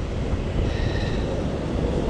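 Wind on the microphone, a steady low rumble, with waves washing over the rocky shore.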